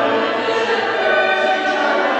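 A choir singing, holding long chords in several voices.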